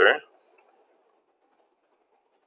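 A few short, light clicks of computer keyboard keys being typed, bunched in the first second.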